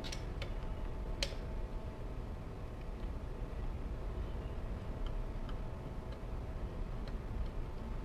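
A few small clicks of cable plugs being pushed into the back of a 3D scanner's controller box, the sharpest just over a second in and fainter ticks later, over a steady low hum.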